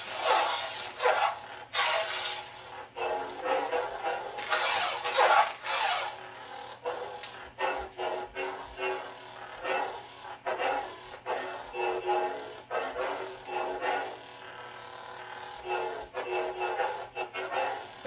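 Homemade Arduino lightsaber's sound board and speaker playing a steady electric hum. Over it come bright crackling clash effects, triggered by the motion sensor, right at the start, about two seconds in and around five seconds in. The rest is a run of shorter clash hits and rising-and-falling swing sounds.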